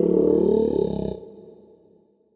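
A long, drawn-out vocal roar in a man's voice, its pitch wavering and gliding. It fades away a little over a second in.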